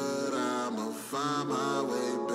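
Wordless vocal harmony held in long, chant-like notes with the beat dropped out. The voices break off briefly about a second in, then come back.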